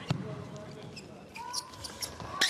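Indoor volleyball arena ambience between rallies: crowd murmur and voices, with a few short, sharp taps and squeaks, mostly in the second half.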